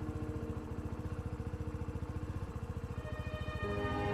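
Motor scooter engine idling with a fast, even putter of about ten beats a second, under soft background music that gains new notes near the end.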